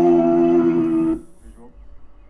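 A man's voice holding one steady, low hum for about a second and a half, then stopping abruptly about a second in, leaving only faint sound.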